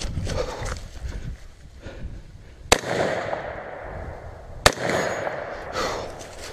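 Two AR-15 rifle shots, about two seconds apart, between stretches of rustling movement through dry leaves.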